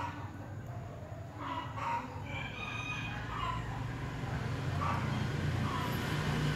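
Chickens clucking, with a rooster crowing about two seconds in, over a low steady hum.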